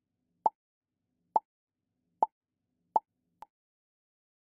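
Short, sharp pop sound effects of a video menu, four in a row about a second apart and a fainter fifth near the end.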